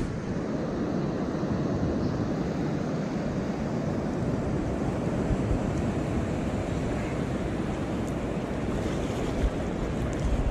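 Steady rush of ocean surf washing in, with wind buffeting the microphone.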